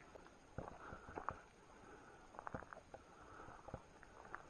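Near quiet, broken by a few faint, scattered clicks and light rustles.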